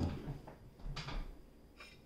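A soft thump, then a brief rustle about a second in and a few faint clicks near the end: someone settling at a table and picking up a knife from a plate.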